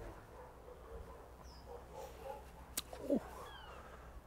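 Faint outdoor ambience with a steady low background and a distant bird chirp. Near the end come a sharp click and a short falling call.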